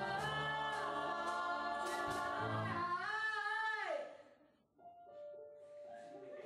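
Show choir singing in full harmony, building into a held chord that cuts off about four seconds in, followed by a few soft held notes.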